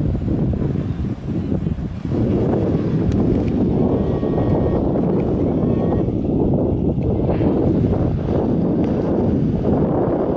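Wind buffeting the camera microphone: a loud, steady low rumble that fills out from about two seconds in.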